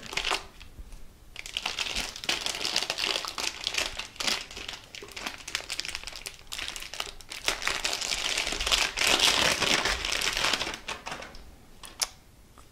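Plastic anti-static bag crinkling and rustling as a 3.5-inch hard drive is handled and slid out of it: a continuous crackle that runs for most of ten seconds and dies away near the end.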